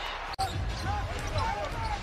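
Basketball being dribbled on a hardwood arena court under steady crowd noise, after an abrupt edit cut with a split second of silence about a third of a second in.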